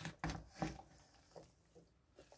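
Wooden spoon stirring chopped meat and vegetables in a stainless steel pot: a few soft scrapes and clacks in the first second, then little more than faint stirring.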